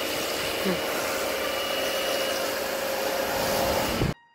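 Pressure washer running, its water jet rinsing snow foam off a car's bodywork: a steady rush of spray with a faint hum underneath.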